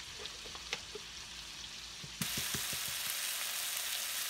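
Chicken tenderloins frying in butter in a cast-iron skillet, a steady sizzle with a few light clicks. About halfway through the sizzle suddenly becomes louder and brighter.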